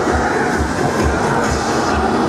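Loud music with a steady bass beat, a little over two beats a second, playing at a funfair ride.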